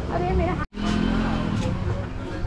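Voices talking over a steady engine hum, with a sudden short dropout of all sound about two-thirds of a second in.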